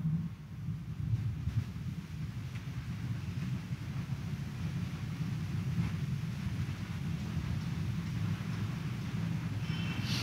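A steady low rumble of background noise, with no distinct events.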